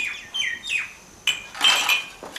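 A bird calling in three short falling chirps in the first second, followed near the end by a click and a ringing clink of crockery.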